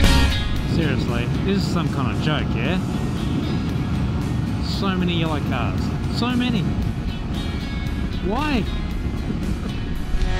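Steady low rumble of wind and engine from a moving motorcycle, heard from the rider's own camera. Over it a person's voice makes short wordless pitched sounds at intervals, the last a quick rising-and-falling one near the end.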